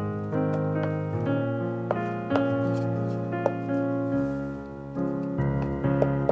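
Background piano music, a run of notes changing every half second or so.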